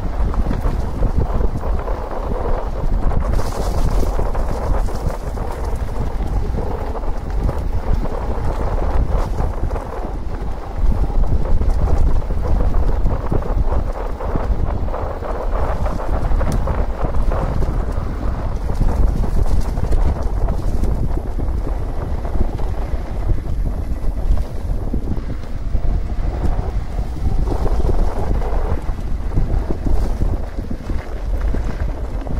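Wind buffeting the camera microphone during a fast e-mountain bike ride, over the steady rumble of knobby tyres on a dirt and gravel road. It runs without a break and is loud.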